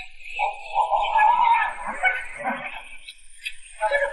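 A woman's drawn-out cry of pain and distress, strongest for about two seconds and then fading into fainter groans.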